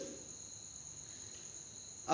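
Faint, steady high-pitched trilling of crickets that holds unchanged through a pause in speech, over faint room tone.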